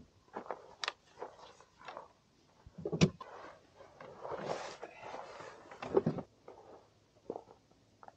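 Knocks, clicks and rustling as trekking poles and a backpack are stowed in a car's open boot, the loudest knocks about three and six seconds in.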